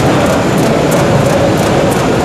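Mark Andy Performance Series P5 narrow-web flexo label press running: a steady machine noise with a light ticking repeating several times a second.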